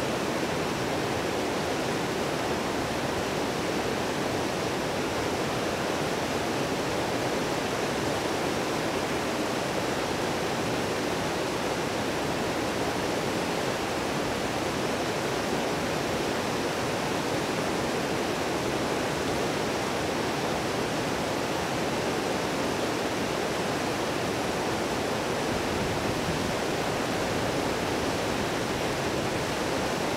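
A fast-flowing stream rushing steadily, an even unbroken noise.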